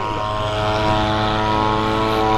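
Sport motorcycle engine idling steadily at a constant pitch.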